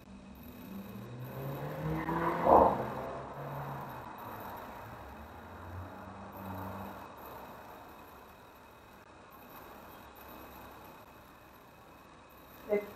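A motor vehicle passing by, its engine rising in pitch as it approaches. It is loudest about two and a half seconds in, then fades away over the next few seconds.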